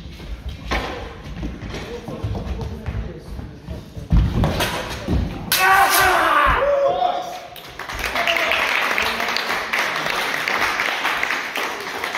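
Fencers' feet thudding on a wooden floor as they close in, then a fast exchange of steel sabres with a loud hit about four seconds in and a shout about six seconds in.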